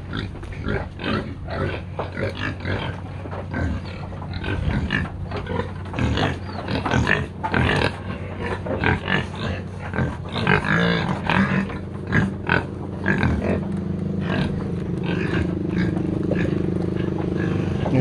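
A group of domestic pigs grunting and feeding at a trough, with irregular short grunts and snuffles. A steady low hum comes in during the last few seconds.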